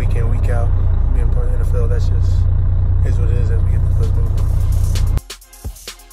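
Steady low drone inside a coach bus cabin, with voices over it. About five seconds in it cuts off, and outro music with sharp percussive hits begins.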